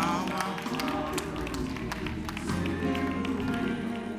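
A church band plays gospel music: held keyboard chords over steady low notes, with light percussive taps.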